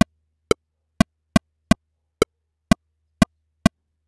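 Pro Tools click track metronome ticking at an uneven tempo: nine short, pitched clicks, spaced between about a third and half a second apart. The clicks speed up and slow down as they follow freehand-drawn tempo changes in the tempo ruler.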